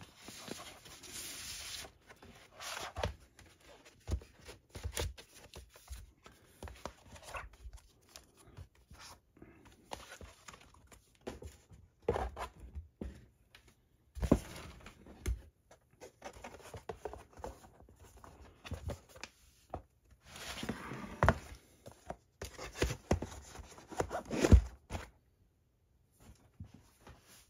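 Card and paper packaging being handled and slid into sleeves: rustling, scraping slides of card against card, with scattered soft knocks and taps as pieces are set down. The sharpest knock comes near the end.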